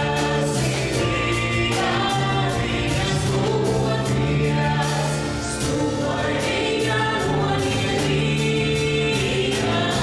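Live folk-dance music: a choir of voices singing over instrumental accompaniment, with a steady beat.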